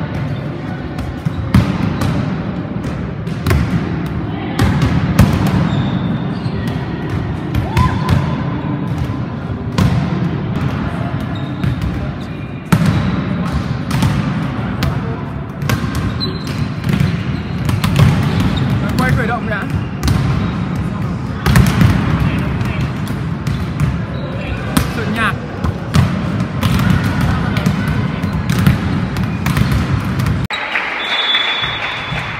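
Volleyballs being struck by hands and bouncing off a gym floor in a volleyball warm-up: a steady run of irregular sharp smacks, several every few seconds, over a murmur of voices in a large hall.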